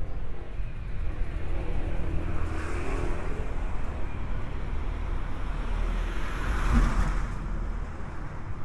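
A car passing on a residential street, its road noise swelling twice, louder the second time near the end, over a steady low rumble.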